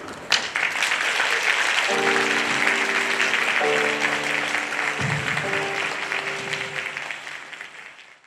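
Audience applauding after a cello performance, starting about a third of a second in and fading out near the end.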